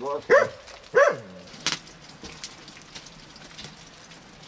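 Two short barks from a dog in the first second or so, then a few sharp pops from a wood fire burning in a brick bread oven as it heats up.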